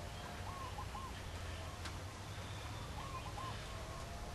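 Faint outdoor background with two soft bird calls, one about half a second in and another about three seconds in, over a low steady hum.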